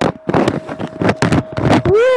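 Phone microphone being handled: a quick irregular run of rubbing and knocking bursts, over a faint steady tone.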